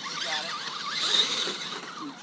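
Small electric motor and drivetrain of a radio-controlled rock bouncer truck whining, its pitch rising and falling quickly as the throttle is worked on a hill climb.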